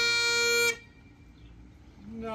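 Highland bagpipes holding a final note over their drones, then cutting off abruptly about three-quarters of a second in.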